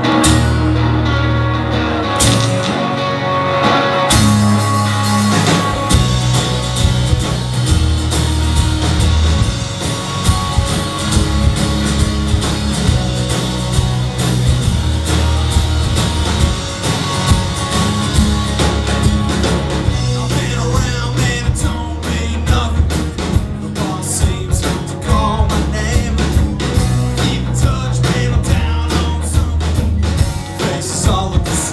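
A rock band playing live: electric and acoustic guitars, bass guitar and drum kit, with a singer, in a song in C minor. The guitars open alone; bass and drums come in after about four seconds, and the drumming grows busier in the last third.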